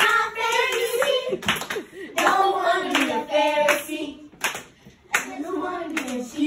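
A group of young girls singing together to a clapping beat, their hand claps landing at a fairly even spacing under the voices.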